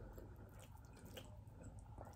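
Faint, wet eating sounds of fingers working through a saucy chicken stew on a plate, with a few small clicks, just above near silence.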